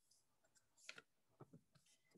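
Near silence, with a few faint clicks of tarot cards being handled as one card is drawn from the deck, the clicks falling about a second in.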